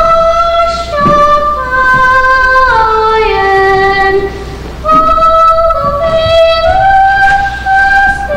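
A girl singing solo, holding long, drawn-out notes that step down and then up in pitch, with a short pause for breath about four seconds in.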